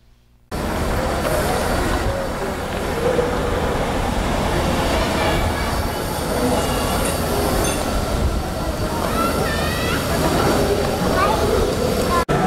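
Train running past on electrified track: a loud, steady rumble of wheels on rails that starts suddenly about half a second in, with a few short rising squeals near the end.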